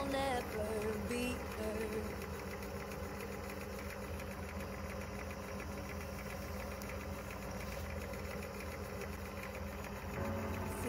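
Wood lathe motor running steadily, spinning pen blanks while a CA glue finish is applied. Background song with singing is heard over it for the first second or two before dropping out.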